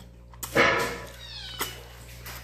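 A cat meows once, a call of about a second that falls in pitch at its end, followed by a short click.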